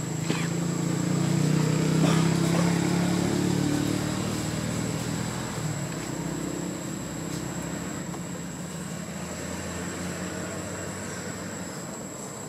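A motor vehicle's engine passing by, swelling to its loudest about two seconds in and then slowly fading away.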